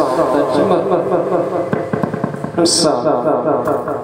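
A man's voice amplified through a karaoke microphone into a loudspeaker, smeared and repeated by the amplifier board's DSP echo effect, with no feedback howl even at maximum mic level.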